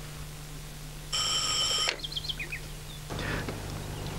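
A telephone rings once, a single short ring of under a second, followed by a few brief bird chirps. A steady low hum lies underneath.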